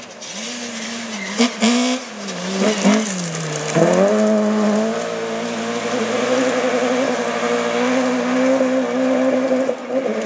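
Rally car engine driven hard on a gravel stage. The revs fall over the first few seconds with a few sharp cracks, then climb suddenly about four seconds in and stay high and wavering as the car comes past.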